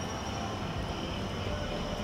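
Steady low rumbling background drone with a faint high hum, even throughout and without distinct events.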